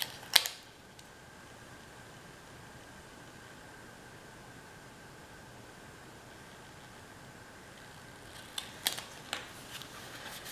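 Paper planner stickers being handled: a sharp crinkle and tap just after the start and a few light clicks about nine seconds in. Between them there is only a faint steady hiss with a thin high tone.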